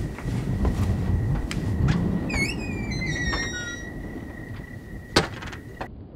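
A house door being closed behind someone coming in: low thuds and steps, a brief squeaky chirping about two and a half seconds in, and a sharp latch click about five seconds in. A faint steady high whine runs underneath.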